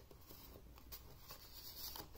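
Faint scraping of a CD sliding into its paper sleeve in an album booklet, the rubbing growing a little louder near the end.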